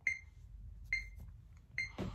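Electronic metronome beeping a slow tempo: three short, high-pitched beeps, evenly spaced just under a second apart.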